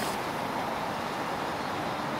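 Steady road and engine noise inside the cab of a moving Dodge RAM dually pickup truck.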